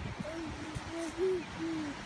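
A baby making a string of short cooing "hoo" sounds, about four in quick succession, each sliding a little up and down in pitch.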